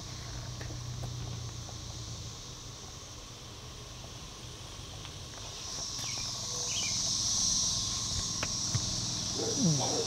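Chorus of Brood XIX periodical cicadas: a steady, high, even drone that swells louder after about six seconds.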